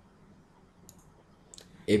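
A quiet pause holding a few faint, brief clicks, about a second in and again around a second and a half in, before a man's voice begins near the end.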